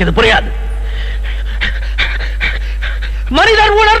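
A man panting hard in quick, irregular breaths, then letting out a loud, drawn-out cry about three seconds in, over a steady low drone.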